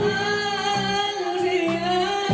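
A woman singing a long held note with a slight waver in pitch, in Arabic tarab style, over instrumental accompaniment whose low notes change twice.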